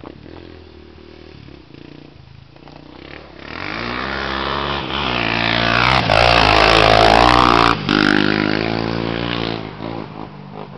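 Sport quad ATV engine growing louder about a third of the way in as the quad rides close by, revving with its pitch sliding up and down while loudest, then fading away near the end.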